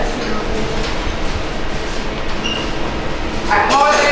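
The unmuted sound of the shop floor: a steady rumbling hum with background chatter. A voice comes in loudly near the end.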